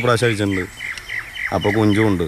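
Small birds chirping, a run of short, high, quick chirps that is clearest in the pause between a man's voice.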